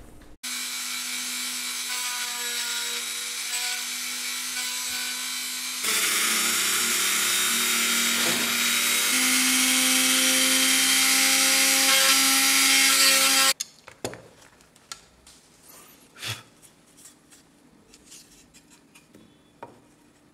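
Dremel rotary tool in a router base, running a small router bit to cut a shallow groove in wood for a brass inlay. The steady motor whine steps up in loudness about six seconds in and cuts off abruptly after about thirteen seconds, followed by a few faint knocks.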